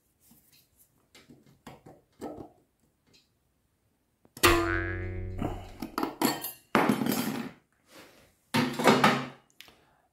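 Pliers working a bent-wire lock ring out of the intake filter housing on an Ingersoll Rand 242 compressor pump: faint metal clicks, then about four and a half seconds in the wire springs free with a ringing twang. A few scraping rattles follow as the ring is pulled clear.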